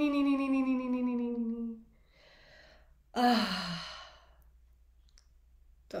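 A woman's voice holding a long sung tone that slides down in pitch and ends about two seconds in. It is followed by a soft breath in and a shorter breathy sigh, falling in pitch, about three seconds in.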